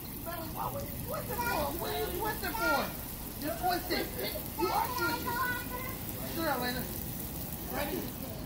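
Indistinct, fairly high-pitched voices talking and calling in short phrases over a steady hiss of running and splashing pool water.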